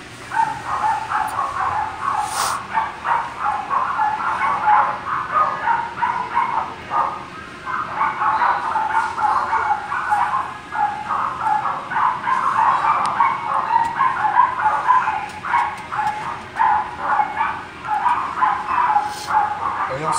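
Many small dogs barking and yapping together almost without pause, a dense overlapping chorus that dips briefly a few times.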